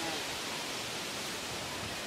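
Steady hiss of outdoor background noise.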